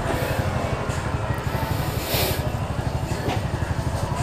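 A steady low engine rumble with an even pulse. There is a short hiss about two seconds in.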